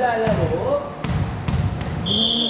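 A volleyball bounced on a hard gym floor four times, sharp thuds spaced roughly half a second apart, over players' voices.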